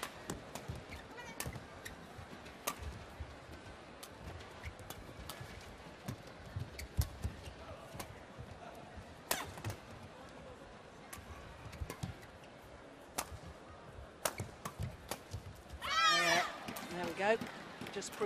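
Badminton rally: sharp racket strikes on the shuttlecock at irregular intervals, a few seconds apart, over low arena background noise. About sixteen seconds in, loud shouting voices as the rally is won.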